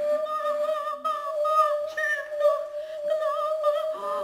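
Contemporary chamber music for bass flute, bass clarinet and female voice: one long, steady held note, with higher tones wavering and wobbling above it.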